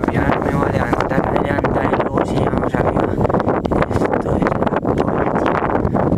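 Strong wind blowing across the camera's microphone, loud and gusty, with constant crackling buffets.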